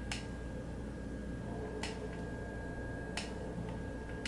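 Three sharp, separate clicks, with a fainter fourth near the end, over low room noise and a faint steady high tone: button presses stepping through the Clearview goggle module's setup menu.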